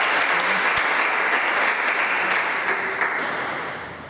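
Spectators applauding a won point, the clapping tapering off near the end.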